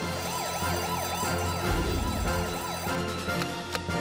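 Alarm siren with a fast, repeating rising-and-falling wail, sounding as the red alarm light flashes to call out the rescue team, over a low steady backing tone. A few sharp clicks come near the end.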